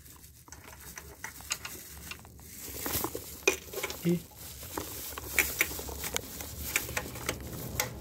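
Irregular light metallic clicks and taps as a hand works the locking pins and bolts of the sprocket holding tool on a diesel injection pump, with the rustle of a plastic bag worn over the hand.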